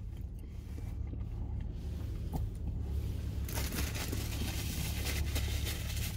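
Paper napkin rustling and crinkling as it is handled, starting about three and a half seconds in, over a low steady rumble inside a vehicle cab.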